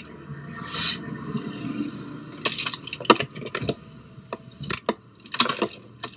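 Handling noises: a few short rustles and clinks spread over several seconds, with a sharp click about three seconds in.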